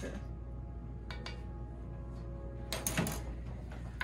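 A metal spoon stirring thick soup in a heavy enamelled pot, with a few short clinks and scrapes against the pot, the loudest cluster about three seconds in, over a steady low hum.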